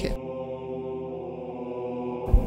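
Background music in a pause of the narration: a slow, chant-like piece with steady held notes.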